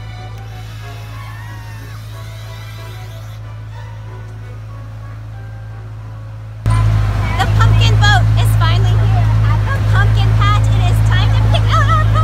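A boat's motor running with a steady low hum. About two-thirds of the way in it turns suddenly louder and people's voices join it.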